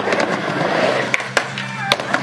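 Skateboard wheels rolling across a mini ramp, with three sharp clacks of the board hitting the ramp in the second half.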